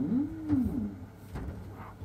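A short vocal call, under a second long, that rises and then falls in pitch, with a knock about halfway through it. A faint steady low hum runs underneath.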